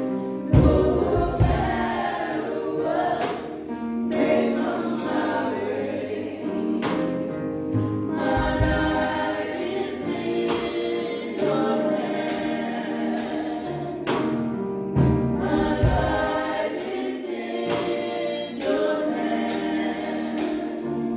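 A small group of women's voices singing a gospel song, with sustained sung notes throughout.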